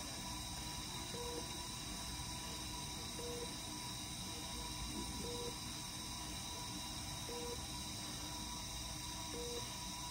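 A soft, short electronic beep repeating about every two seconds from bedside medical equipment, over a steady hiss and hum.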